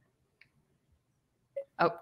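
The audio of an online video call drops out to dead silence for about a second and a half. Then a woman's voice comes back in near the end.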